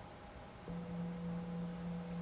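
Singing bowl struck once, about two-thirds of a second in, then ringing on with a steady low tone and a fainter higher overtone: the signal to begin a meditation session.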